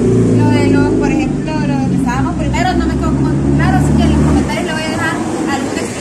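A motor vehicle's engine running close by on the street, a low rumble under talking voices that drops away about four and a half seconds in.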